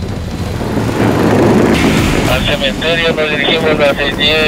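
Motorcycle riding along a street: engine and wind noise in an even rush. About two seconds in, a wavering, voice-like pitched sound joins over it.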